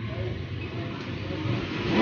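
Low, steady background rumble with faint handling noise, growing a little louder near the end.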